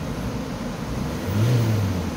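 Ford Transit van's engine idling, then revved once in Park: the note rises to a peak about a second and a half in, near 3,000 rpm, and drops back toward idle.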